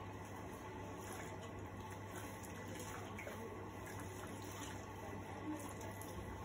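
Water running steadily from a salon backwash basin's shower spray hose, rinsing hair into the basin.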